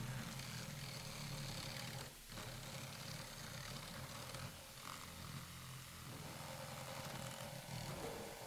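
Experimental ensemble of saxophone-hose instrument, electric motors and electronics playing a low, grainy, purring rumble, broken briefly about two seconds in.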